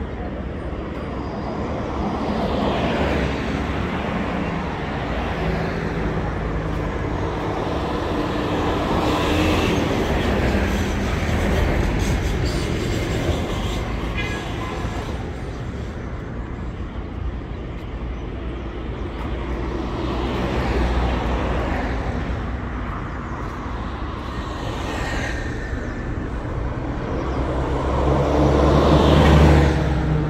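Road traffic on a multi-lane city street: vehicles pass in slow waves, with the loudest pass near the end.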